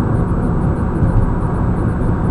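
Steady road and engine noise inside a moving car's cabin: a dense low rumble of tyres on asphalt and the running engine.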